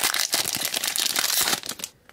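Foil wrapper of a Disney Lorcana booster pack crinkling as it is torn open by hand: a dense run of crackles that dies away near the end.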